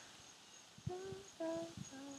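A person softly sings "da, da, da", three short notes about half a second apart, each lower than the last, imitating a trumpet accent in the music.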